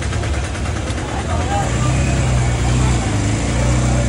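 Street background noise with an engine running steadily underneath, its hum growing a little stronger about two seconds in.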